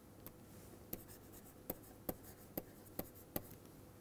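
Faint taps and scratches of a stylus writing by hand on a tablet screen: about seven light clicks over three seconds as a short word and number are written.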